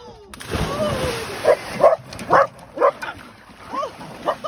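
Two people plunging feet-first off a dock into a lake, a big splash of water, followed by a dog barking repeatedly in short sharp barks.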